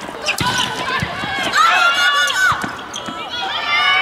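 A volleyball rally in a gym: the ball is struck sharply a few times, amid players' short calls and sneaker squeaks on the hardwood court.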